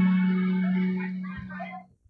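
Live band music dying away: a held electronic keyboard note sustains and fades under a faint voice, then the sound cuts off just before the end.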